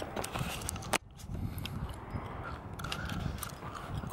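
Handling noise from a handheld camera carried while walking: faint rustling and light clicks, with one sharp click about a second in.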